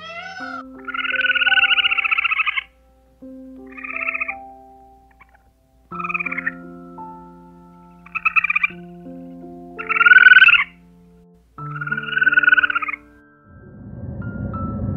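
Soft background music of sustained notes, with about six loud, raspy, pulsing animal calls laid over it at irregular intervals. The longest call comes early and the loudest about ten seconds in.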